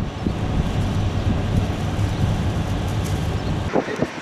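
Wind buffeting an outdoor microphone: a steady low rumble with hiss, which drops away just before the end.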